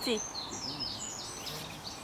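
A small songbird singing a quick string of short, high chirping notes over steady outdoor background noise.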